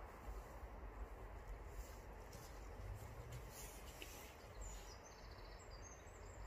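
Faint outdoor ambience with a low rumble, and a small bird giving a brief, high, repeated chirp about four and a half seconds in.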